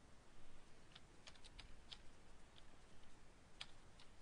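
Faint computer keyboard typing: about eight separate key presses at an irregular pace.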